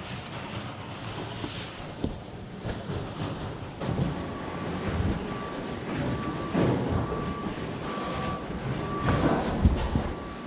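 Rustling of a nylon rain jacket and handling noise rubbing on a body-worn camera's microphone, with soft thumps of walking and rummaging that grow busier from about four seconds in. A faint broken beeping tone runs behind it from about halfway.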